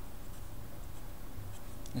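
Felt-tip marker writing on paper, a faint, steady scratching as the letters are drawn.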